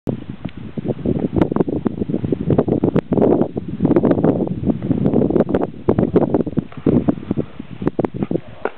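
Wind buffeting the camera's microphone: a loud, gusty rumble that keeps rising and falling, broken by many sharp pops.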